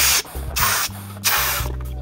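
A rubber balloon being blown up by mouth: three hissing breaths, each about half a second, with pauses between them.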